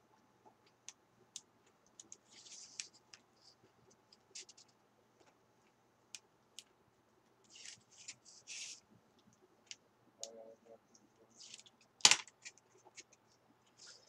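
Scattered scratching and rustling as fingers rub and peel leftover double-sided sticky tape off a sheet of white cardstock, with small clicks and one sharp click near the end.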